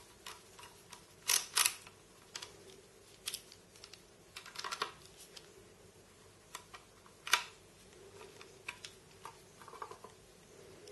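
Small clicks and taps of a precision screwdriver and Torx mounting screws against a solid state drive's case as the screws are fitted into its side: scattered light ticks, the loudest two close together about a second and a half in, a quick run near the middle and another sharp click a little past seven seconds.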